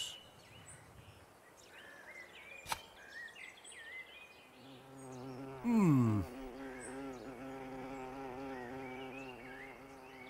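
A bee buzzing, which comes in about halfway through with a loud swoop falling in pitch, then hovers with a steady, wavering buzz. Faint bird chirps can be heard in the quieter first half.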